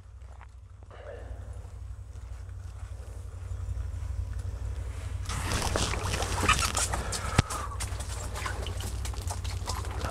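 Handling and rustling noise from an ice angler working a rod and reel to bring a hooked fish up through the ice hole, growing louder about five seconds in, with one sharp click about seven seconds in, over a steady low rumble.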